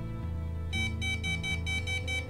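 Handheld EMF meter beeping rapidly, about five high beeps a second, starting about two-thirds of a second in. It is held against a loudspeaker's magnet, whose field drives its needle into the red zone and sets off the alarm.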